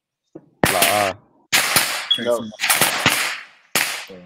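A voice coming over the video call, loud and heavily distorted, in four sudden bursts with sharp starts.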